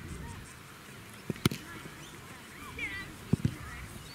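A boot striking an Australian rules football, a single sharp thud about a second and a half in. Two lighter thuds follow close together near the end.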